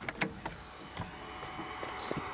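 A Fiat Uno's door handle pulled and the door latch releasing as the door is opened: a few short clicks and knocks, mostly near the start and once about a second in.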